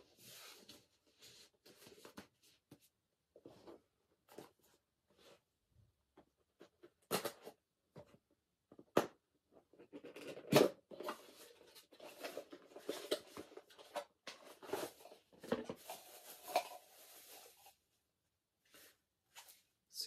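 Paper wrapping being unwrapped by hand from a mug, rustling and crinkling in irregular bursts: sparse at first, then dense for several seconds in the second half.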